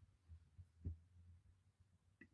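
Near silence: faint low thumps and rumble from hands handling the computer or webcam setup, the clearest single thump a little under a second in.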